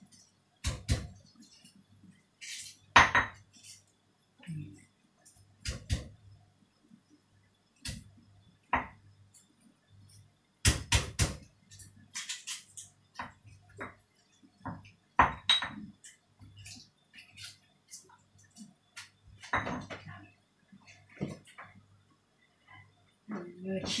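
Pestle pounding garlic in a black stone mortar: irregular sharp knocks, some in quick runs of two or three.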